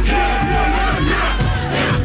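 Live rap performance through a club PA: a bass-heavy beat with deep sustained bass notes, under a crowd yelling and shouting along.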